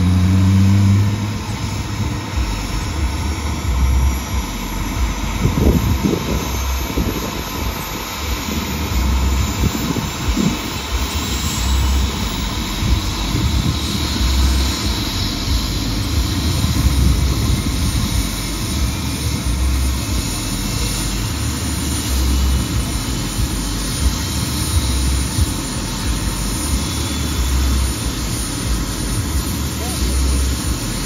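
Light turbine helicopter running on the ground with its rotor turning: a steady engine roar with a thin high turbine whine that climbs slowly in pitch, and uneven low thuds underneath.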